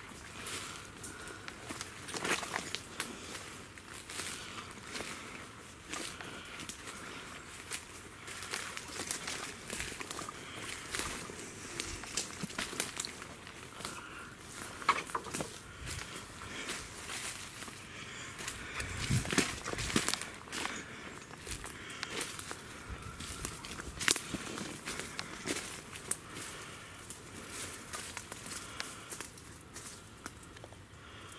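Footsteps crunching through dry leaf litter and twigs on a woodland floor, in an irregular run of crackles and snaps that grows denser and louder about two-thirds of the way through.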